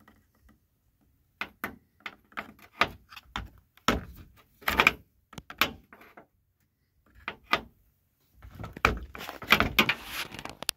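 A metal tool prying and scraping at the plastic air filter of a Stihl MS 250 chainsaw, giving a string of irregular clicks and knocks. It gets busier near the end as the filter is forced off its plastic hooks.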